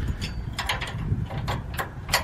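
Seed tender's box-locking lever and steel linkage being handled: a string of short metal clicks and clanks over a low rumble.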